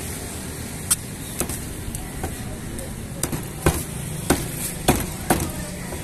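Heavy butcher's cleaver chopping through raw chicken onto a wooden log chopping block: about eight sharp, irregularly spaced chops.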